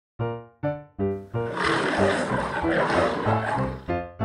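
Three short musical notes, then a lion's roar sound effect over music lasting about two and a half seconds, as the stone-lion logo appears.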